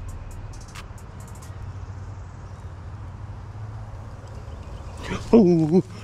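A low steady outdoor rumble with a few faint high ticks early on. About five seconds in, a man gives a loud startled yell as a hissing black snake comes straight at him.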